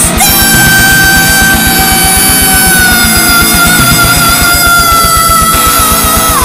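Heavy metal song: a single high note is held for about six seconds over a fast, steady kick-drum beat, sagging slightly in pitch before it slides away near the end.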